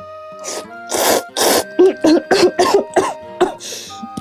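A woman slurping spicy cup-ramen noodles in a few long pulls, then a quick string of short coughs and splutters as the spicy broth catches in her throat, over steady background music.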